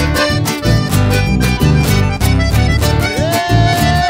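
Live band playing an instrumental passage: accordion over strummed guitars and a steady bass beat. About three seconds in, a high note slides up and is held.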